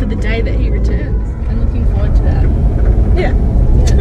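Steady low rumble of a car driving, heard from inside the cabin, with a young woman's voice talking over it in snatches.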